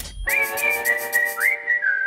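Short title-card theme music: a whistled melody over a held chord and a quick ticking beat. The whistle swoops up about three-quarters of the way through, then settles on a lower held note.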